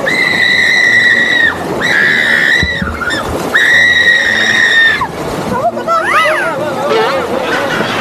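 A child screaming while tubing down stream rapids: three long, high, steady screams one after another, then a shorter wavering cry, over the rush of water.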